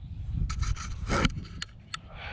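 Close rustling and scraping against the microphone: marsh grass and clothing brushing the camera as it is moved, in a few irregular strokes about halfway through.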